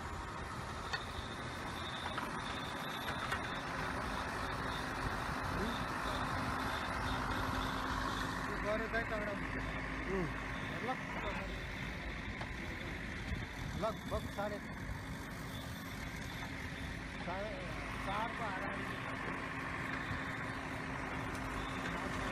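Engine of an earthmoving machine running steadily as it works, with a constant low hum under it. Snatches of voices come through about halfway through and again near the end.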